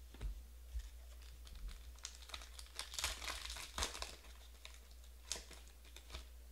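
Plastic foil wrapper of a Panini Prizm Draft football card pack crinkling as it is torn open by hand, busiest in the middle few seconds, with a few light clicks of cards being handled at the start.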